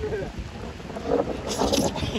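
Wind buffeting the microphone in an uneven low rumble, with a few brief vocal sounds from a man's voice about a second in and near the end.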